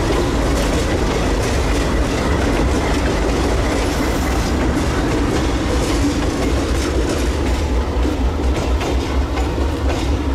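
A light-engine consist of diesel locomotives passing and moving away: the engines rumble and the steel wheels click over rail joints. The sound stays loud and steady.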